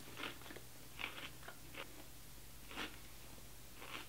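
Faint crunching of a wavy potato chip being chewed, in about half a dozen short, separate crunches.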